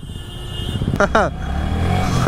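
Yamaha R15 V3's single-cylinder engine pulling away from a stop. Its low rumble and the road noise grow steadily louder over the last second, with a brief spoken word about a second in.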